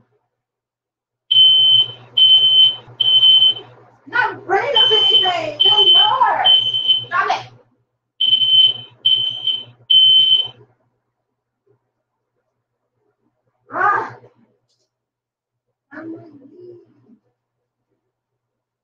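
Smoke alarm sounding its three-beep alarm pattern: three sets of three loud, high-pitched beeps. The beeps stop about ten seconds in.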